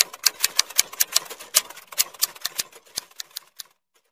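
Typewriter sound effect: a rapid, irregular run of key clacks, several a second, that stops shortly before the end.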